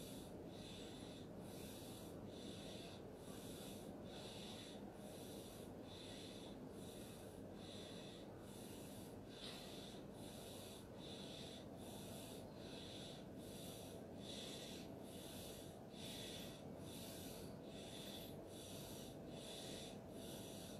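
Quiet room tone: a faint steady hiss, with a higher hiss that pulses regularly a little more than once a second.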